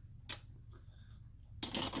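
A single faint click about a third of a second in over quiet room tone, then a short rustle near the end.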